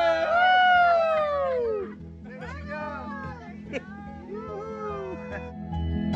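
Women screaming with excitement: long, loud, high-pitched screams that die down about two seconds in, followed by shorter, quieter squeals, over soft background music.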